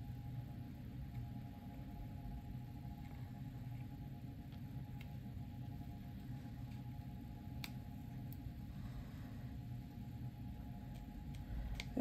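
Small scissors snipping the leathery shell of a ball python egg, a few faint clicks spread over several seconds, over a steady low hum.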